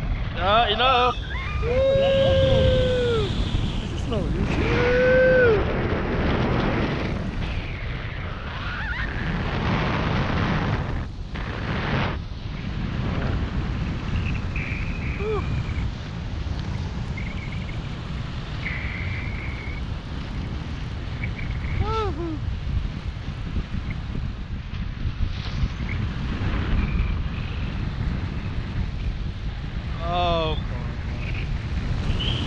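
Wind rushing and buffeting over the camera microphone in flight under a tandem paraglider, a steady low rumble. A few rising-and-falling whooping shouts ring out in the first six seconds, with brief calls later.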